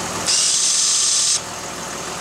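Electric shift actuator motor on a 2007 Dodge Nitro's New Process 143 transfer case running with a high whine for about a second, then stopping abruptly, as it is commanded into two-wheel drive. The engine idles underneath.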